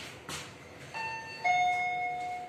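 Fujitec elevator car's electronic chime: a two-tone ding-dong, a higher tone about a second in, then a lower, louder one that rings on and fades.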